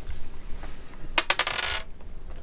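Dice thrown onto a hard table: a few sharp clacks about a second in, then a short rattle as they tumble and settle.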